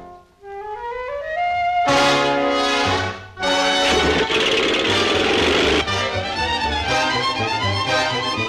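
Orchestral cartoon score led by brass. It opens with a single rising glide, then breaks into loud brass chords and a dense full-orchestra passage.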